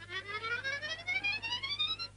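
Chromatic harmonica playing one long rising run, climbing about two octaves, that stops abruptly at the end.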